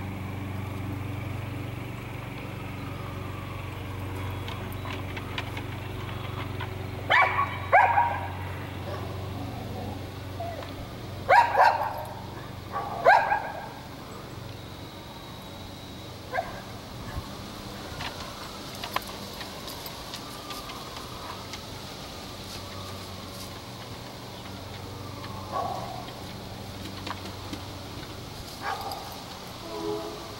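A dog barking: a pair of barks, then about four seconds later a quick run of three, with a few fainter sounds later on.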